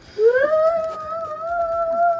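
A high-pitched voice holding one long sung note, sliding up into it at the start and wavering slightly, lasting about two seconds.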